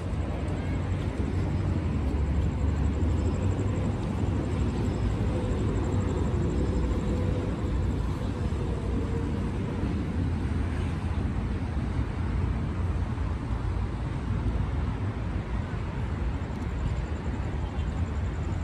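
Steady low rumble of outdoor city ambience, mostly distant road traffic, with faint voices in the background.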